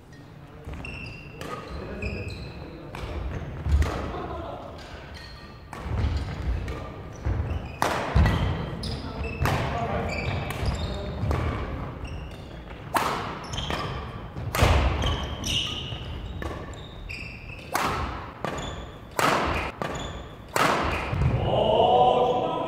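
Badminton doubles play: rackets striking the shuttlecock in a string of sharp cracks, the hardest smashes about 8 and 15 seconds in, with sneakers squeaking on the wooden court and players' voices, all echoing in a large gym hall.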